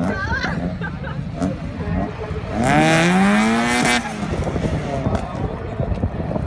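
A drag-racing car's four-cylinder engine revs hard for about a second and a half, starting about two and a half seconds in, its pitch climbing and then holding before it cuts off abruptly. Voices chatter in the background.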